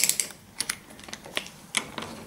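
Screwdriver working the steel retaining screw of a euro cylinder lock in a UPVC door's faceplate: a string of irregular sharp metallic clicks as the tip seats and starts to turn the screw.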